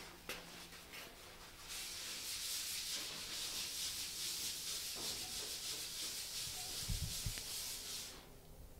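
A cloth rag rubbing steadily on the painted cab roof of a 1968 Dodge D100 pickup, starting about two seconds in. A couple of dull bumps come near the end.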